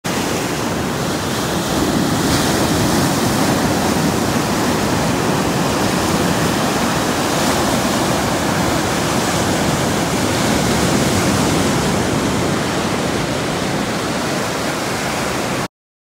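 Ocean surf: waves breaking and washing up a sandy beach, a steady rush that swells and eases a few times, then cuts off suddenly near the end.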